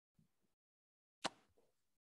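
Near silence, broken once by a single short click a little over a second in.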